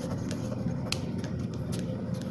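Ballpoint pen writing on paper: faint scratching strokes with a few small ticks, over a low steady hum.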